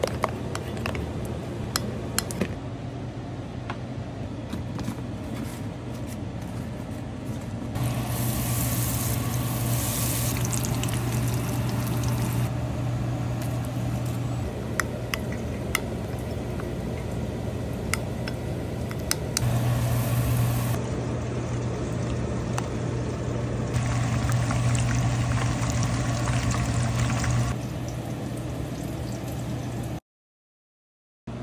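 Tempura being prepared: a fork stirring batter in a bowl and light clinks of utensils, over a steady low hum, with two longer stretches of louder hiss partway through.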